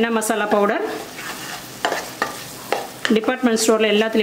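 A wooden spatula stirs and scrapes a thick onion-tomato masala paste around a stainless steel pan, the paste sizzling in oil. There are a few short, sharp scrapes in the middle.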